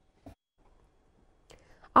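Near silence: a pause in the broadcast sound. A brief faint sound comes about a quarter second in, and a few faint short sounds near the end, just before a woman's voice starts.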